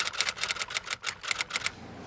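Rapid, uneven typewriter key clacks, a typing sound effect that spells out an on-screen title; they stop shortly before the end.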